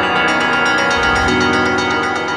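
Synthesizer music: bell-like, mallet-like tones ringing over a sustained pad, with a new low bass note coming in about a second in.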